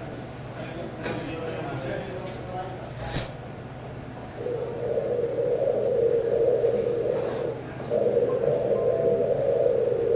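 Doppler ultrasound recording of the bruit over the eye of a patient with a very large carotid-cavernous fistula: a steady rushing flow noise that comes in about four seconds in and carries on. Two short sharp clicks come before it, about one and three seconds in.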